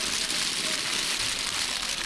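Whole walnuts in the shell pouring from a crate onto a heap of walnuts, a dense, steady clattering rattle.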